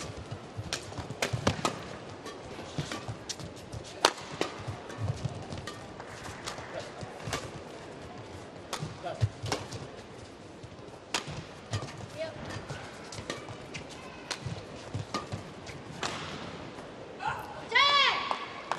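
Badminton rally: sharp, irregular smacks of rackets hitting the shuttlecock, some in quick succession, with players' shoes thudding and scuffing on the court over a steady crowd murmur. A brief rising squeal comes near the end.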